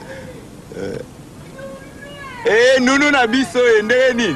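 Speech: a man calls out a loud greeting, "My darling! How are you?", starting about two and a half seconds in, his voice high and sliding up and down in pitch. Before that there is only faint background sound.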